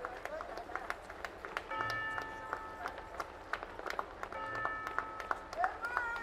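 Rope and wooden gallows beam creaking as a hanged body sways. Long creaks come roughly every two and a half seconds, with sharp little clicks in between.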